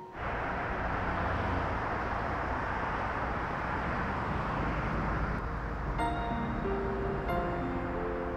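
Steady city traffic noise, an even rush of passing cars. Background music of held notes comes in about six seconds in.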